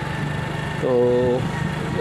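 Small motorcycle engine running steadily at cruising speed while being ridden, a constant low hum.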